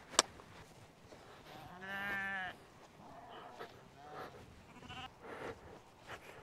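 A brief lip smack right at the start, then a hill ewe bleating once, a single wavering call about two seconds in.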